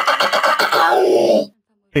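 A loud, rough, trembling cry from an animation sound effect, lasting about a second and a half and sinking lower in pitch as it ends.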